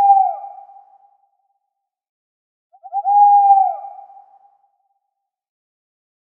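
Owl hoot heard twice, about three seconds apart; each is a held note that bends down and fades at its end.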